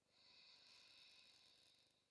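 Near silence, with one faint, long breath out lasting most of the two seconds.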